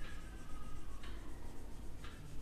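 Marker pen squeaking and rubbing across a whiteboard as a line is drawn and darkened, in strokes about a second apart.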